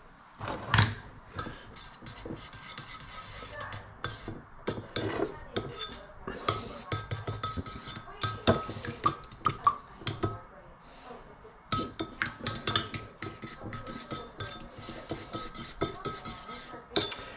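Metal spoon stirring a sticky chili-and-syrup glaze in a small ceramic bowl, clinking and scraping against the bowl's sides in quick, uneven strokes, with a short pause about ten seconds in.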